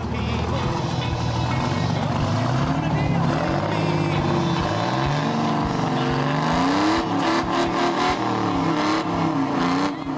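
The 1968 GMC Cracker Box's Detroit Diesel 6-71 two-stroke diesel engine running loud, its pitch rising and falling as it is revved up and down several times, mostly in the second half.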